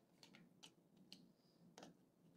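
Near silence broken by a handful of faint, scattered clicks of plastic Lego bricks being handled and pried at on the front of a toy train engine.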